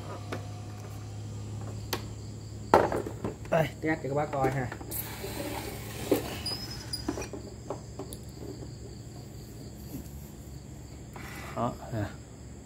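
A plastic induction cooktop is handled and set down on a tiled floor, with a few sharp knocks and some rustling, amid short stretches of low murmured speech. A steady faint high-pitched whine and a low hum run underneath.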